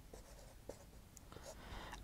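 Faint sound of a marker pen writing on a whiteboard, in a few short strokes.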